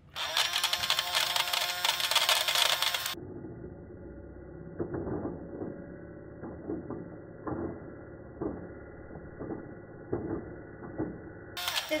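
Casdon toy Dyson vacuum running: a small propeller inside spins coloured plastic beads around the clear bin, and the motor whirs while the beads rattle. The sound is loud and bright for about the first three seconds, then turns duller and quieter with scattered clicks.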